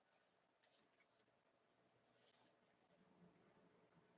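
Near silence, with a few faint, brief rustles of paper record sleeves as 45 rpm singles are handled.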